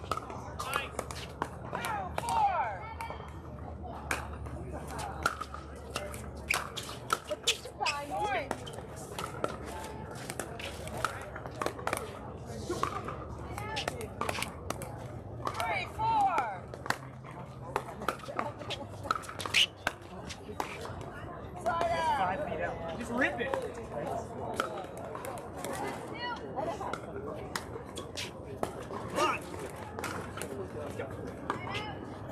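Pickleball paddles striking the hollow plastic ball: many sharp pocks at irregular intervals, with people talking in the background.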